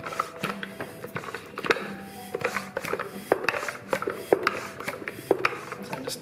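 Tyre pump inflating the scooter's 8.5-inch pneumatic front tyre toward 50 psi. Repeated pumping strokes give a string of short clicks and knocks over a low hiss.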